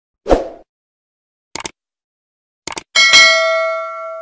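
Sound effects for a subscribe-button animation. A short thump comes first, then two quick double clicks about a second apart, then a bell ding about three seconds in that rings on with several tones and fades away.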